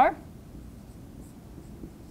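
Dry-erase marker writing on a whiteboard, faint scratching strokes as numbers are written.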